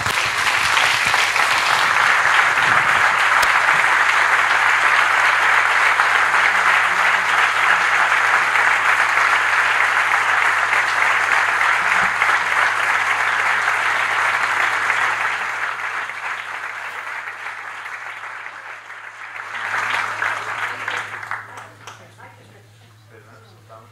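Audience applauding, loud and steady for about fifteen seconds, then thinning, with a brief swell shortly before it stops.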